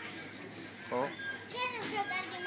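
Children's voices: a short vocal sound about a second in, then a longer call that rises and falls in pitch near the end, over low background noise.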